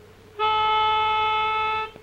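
A single steady reed note, held for about one and a half seconds, blown on a pitch pipe to give the singers their starting pitch.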